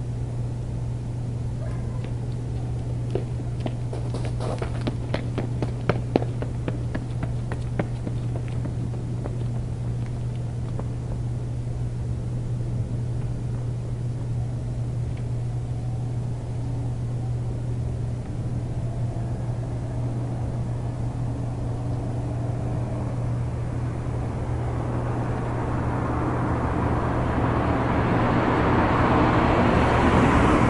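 A steady low hum, with a scatter of sharp clicks a few seconds in. Over the last several seconds a vehicle's rushing noise builds steadily louder.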